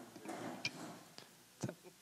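A quiet pause with a few faint, sharp clicks over soft background murmur in the room.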